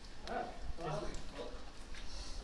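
Two short, wordless vocal sounds from a person, about half a second apart, over a low steady hum.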